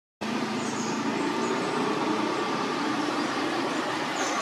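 Steady background noise of a motor vehicle running nearby, like road traffic, cutting in abruptly just after the start.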